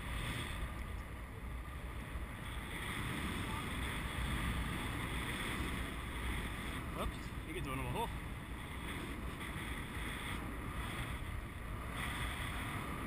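Airflow from paraglider flight rushing over the camera's microphone: steady wind noise with a low rumble.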